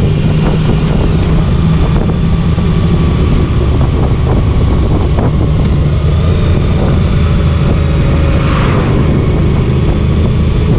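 2020 Honda Gold Wing's flat-six engine running steadily under way, mixed with wind rushing over the microphone.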